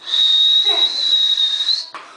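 A single high, steady whistle lasting nearly two seconds, wavering slightly and rising a little in pitch just before it cuts off.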